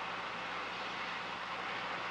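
Steady hiss with a faint low hum: the noise floor of an old 16mm film's optical soundtrack.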